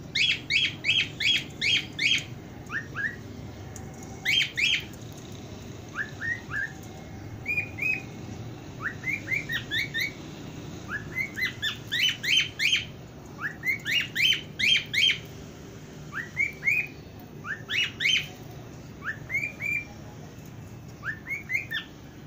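Indian ringneck parakeets calling: short, sharp, upward-sweeping chirps in quick runs of three to six, with pauses of a second or two between runs.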